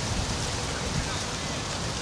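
Wind buffeting the microphone: a steady rushing hiss with a fluttering low rumble.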